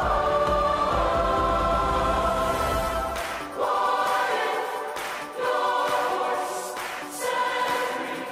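Youth choir singing sustained chords. The deep low accompaniment drops out about three seconds in, and after that the choir's phrases each begin sharply, roughly every two seconds.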